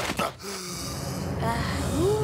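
Cartoon sound effects: a short crash of a body hitting the ground right at the start, then a dazed vocal sound from the knocked-down character.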